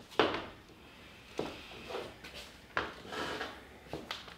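Handling noise: a few sharp knocks or taps, the first and loudest just after the start and others about a second and a half and nearly three seconds in, with soft rustling between them.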